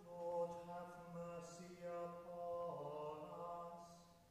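Choir singing slow, held notes in chant, the chord shifting a little under three seconds in and fading away just before the end.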